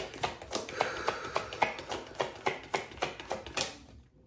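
A deck of tarot cards being shuffled by hand, the cards slapping and clicking together about four times a second. The shuffling stops just before the end.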